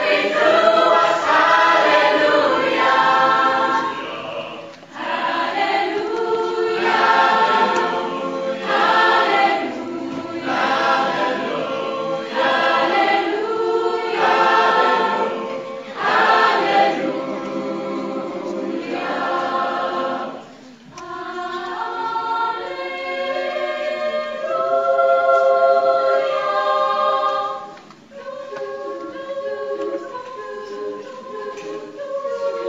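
A mixed youth choir of boys and girls singing in several parts, phrase after phrase, with three short breaks between phrases.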